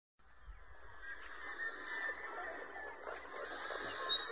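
A flock of geese honking, faint and fading in from silence, many calls overlapping.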